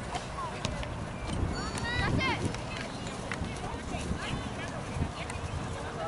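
Distant shouts and calls from youth soccer players and sideline spectators, scattered and indistinct, over a steady low rumble on the microphone.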